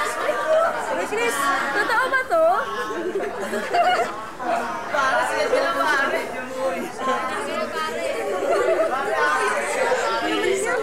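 Chatter of a crowd of students, with many voices talking over one another at once and no single voice standing out.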